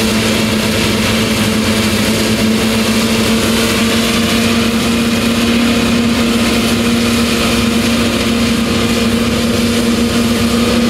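Tractor with a front mower and a pair of rear butterfly mowers running steadily while cutting standing triticale: an even machine drone with a hum that holds one pitch.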